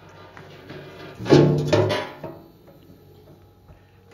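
Music playing from inside the car, loudest a little over a second in, which cuts off a little after two seconds, leaving quiet room noise.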